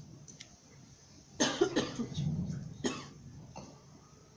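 A person coughing a few times in short bursts, between about a second and a half and three seconds in.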